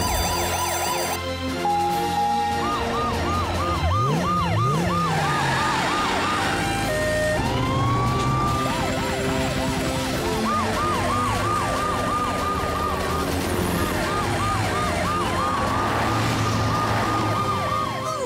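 Emergency-vehicle sirens of a rescue team heading out, rising and falling several times a second, with two or more sirens overlapping, over background music.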